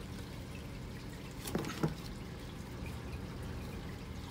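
Steady trickle of water from an aquarium filter. About a second and a half in there are two brief handling sounds from the leather mitt being pulled apart.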